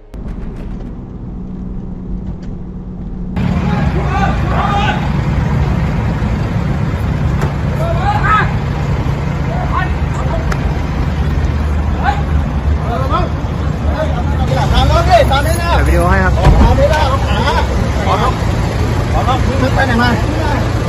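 Car engines running with men's voices calling out over them. A quieter steady engine drone gives way suddenly, about three seconds in, to a louder, busier mix of engines and voices.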